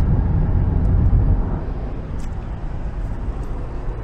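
Steady low road and engine rumble heard inside a moving car's cabin, louder for the first second and a half and then easing off.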